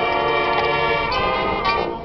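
High school marching band playing: the horns hold one long chord for about a second, then move on to shorter, changing notes.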